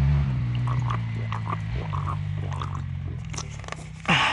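A motorcycle engine running at a steady low pitch, fading gradually over the few seconds, with a few light clicks and knocks of things being handled.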